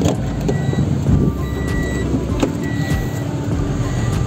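Steady low vehicle rumble with a few short clicks and knocks as a car door is opened.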